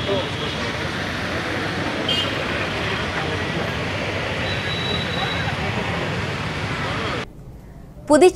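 Busy roadside ambience: a steady wash of traffic noise and people talking, cutting off suddenly shortly before the end.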